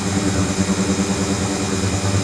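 Ultrasonic tank running with its water agitated: a steady low buzzing hum under an even hiss, with a faint high whine.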